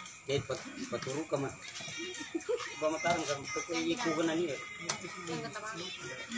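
Maranao dayunday: a voice singing a wavering, melismatic line with heavy vibrato, over plucked guitar accompaniment.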